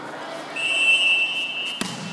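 A referee's whistle blown in one steady, high blast of a little over a second, starting about half a second in. Near the end comes a single sharp impact.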